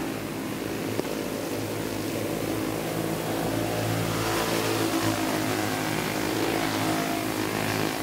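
Racing go-karts' small flathead engines running hard on a dirt track, a steady engine drone with slight shifts in pitch.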